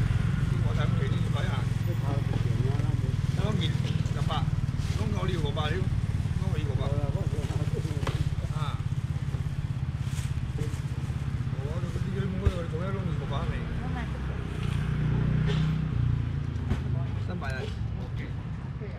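Voices talking and calling around a busy seafood market stall over a steady low hum, with one sharp knock about twelve seconds in.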